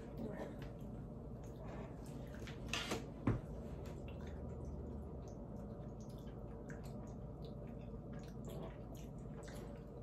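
Faint, scattered wet mouth clicks of someone chewing a small candy, with a slightly louder knock about three seconds in, over low room hum.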